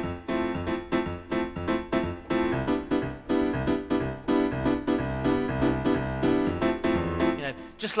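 Classic piano house riff played back on a software piano: quick short chord stabs in a steady rhythm over held low bass notes. It stops just before the end.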